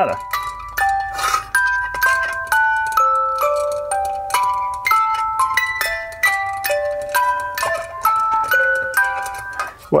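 Hand-cranked music box movement, its steel comb plucked by the pinned cylinder, playing a tune as a string of clear, ringing, bell-like notes. The movement is pressed against the edge of an empty metal box that acts as a sounding board and makes it even louder.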